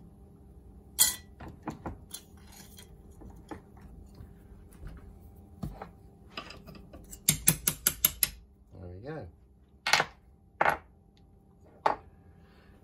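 Sharp metal taps as a socket is knocked against to drive a worn bush out of a moped swinging arm held in a steel bench vise: a quick run of about seven taps past the middle, with single clinks before and after. The bushes being removed are worn out of round.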